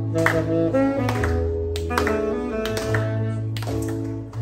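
Saxophone playing a melody of held and stepping notes over electronic keyboard accompaniment, with a sustained bass line and a steady beat.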